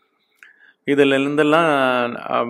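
A man's voice comes in a little under a second in, after a pause, and holds one long drawn-out vowel in a steady, chant-like tone.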